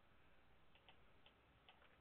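Near silence, with a few faint, short clicks of a computer mouse.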